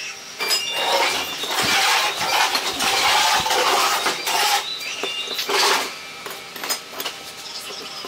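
Square steel tubing pieces scraping and knocking on a workbench top as they are slid into place, a longer stretch of scraping followed by a few light clinks near the end.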